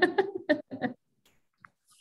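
A woman laughing in a few short bursts over a video call, dying away about a second in.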